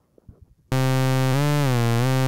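Xfer Serum wavetable synthesizer playing a custom single-cycle waveform: a held low note that starts about two-thirds of a second in, its pitch bending up and then gliding down below where it began.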